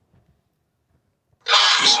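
Near silence for about a second and a half, then a man's voice cuts in loudly.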